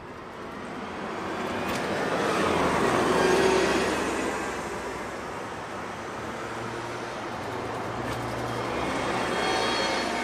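Road traffic on a busy multi-lane city street: cars driving past one after another. Their tyre and engine noise swells and fades, loudest about three and a half seconds in with a falling pitch as a car goes by, and swells again near the end.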